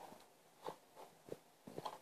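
Faint small splashes and handling noises from a plastic toy boat being pushed about by hand in shallow water: a few soft, separate sounds, the last two near the end a little louder.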